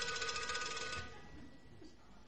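A bell ringing in a rapid trill, stopping about a second in and leaving a single high tone that fades away.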